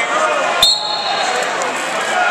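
Crowd chatter in a large gym, with one sharp slap about half a second in from the wrestlers hand-fighting at the tie-up, followed at once by a brief high squeak.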